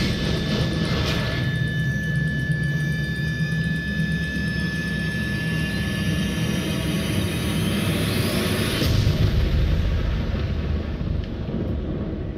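Music for a figure skating program, played over the rink's sound system: a dense low-pitched score with a held high tone through the first half and a rising swell about eight seconds in.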